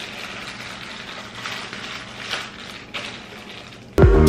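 Plastic bag of desk-assembly hardware crinkling and rustling as it is handled and opened, with a few louder rustles.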